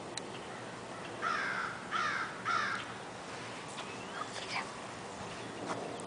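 A crow cawing three times in quick succession, harsh calls well under a second apart.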